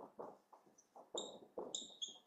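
Marker pen writing on a whiteboard: a run of short, faint strokes, with brief high squeaks about a second in and again near the end.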